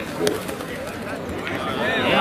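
Indistinct chatter of several people talking outdoors, with one sharp click about a quarter second in.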